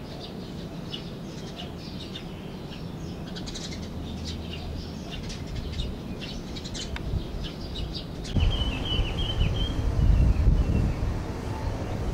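Small birds chirping in quick, short high notes. About eight seconds in, wind starts buffeting the microphone with a low rumble, while a thinner twittering goes on above it.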